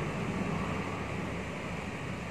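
Steady background hiss of room noise with no distinct sounds.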